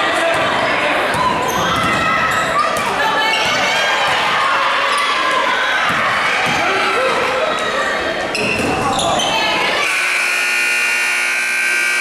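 Basketball being dribbled on a hardwood gym floor in a large, echoing hall, with players and spectators shouting. About ten seconds in, the scoreboard buzzer sounds a steady tone for about two seconds as the game clock runs out.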